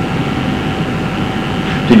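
Steady background noise with a low rumble and a faint constant hum, unchanging through the pause.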